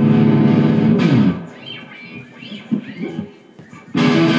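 An electric guitar holds a loud strummed chord, which slides down in pitch and dies away a little over a second in. Faint scattered sounds fill the pause, and then loud guitar playing strikes up again at the very end.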